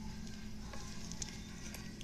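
Faint handling noise: a few light clicks and taps as small objects and a pouch are handled close to the microphone, over a steady low room hum.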